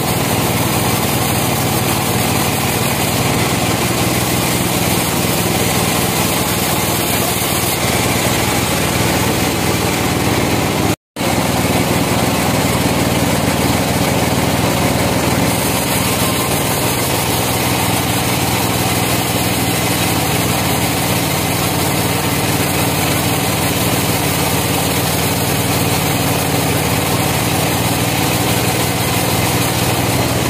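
Band sawmill running steadily, its motor hum and blade sawing through a large trembesi (rain tree) log. The sound cuts out completely for a split second about eleven seconds in.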